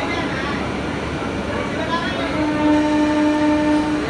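Train horn sounding one steady note for nearly two seconds, starting a little past halfway, over the murmur of voices and noise of a busy station platform.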